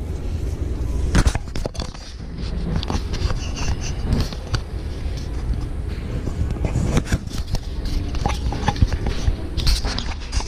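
Handling noise from a camera being moved about: rubbing and scraping on the microphone with several sharp knocks and clicks, over a low steady rumble.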